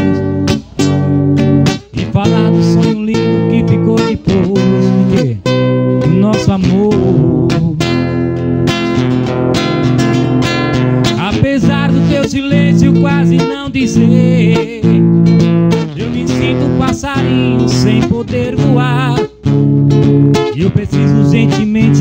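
Acoustic-electric guitar strummed steadily through an amplified live setup, with a man's voice singing over it with wavering vibrato on held notes.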